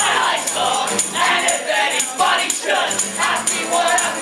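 Live band music: several voices singing together over fiddle, with hand percussion keeping a steady beat.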